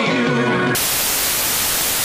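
Music cuts off abruptly less than a second in and gives way to a loud, steady hiss of television static, as when an old TV set is switched between channels.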